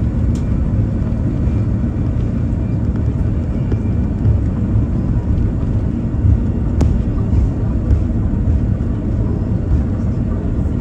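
Airbus A330 cabin noise while the airliner rolls along the runway after touchdown: a steady, deep rumble of engines and wheels. A single sharp click comes about seven seconds in.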